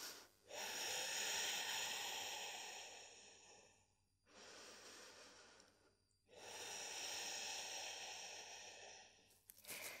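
A person breathing slowly and audibly while holding a yoga pose: two long, soft breaths of about three seconds each, with a pause between.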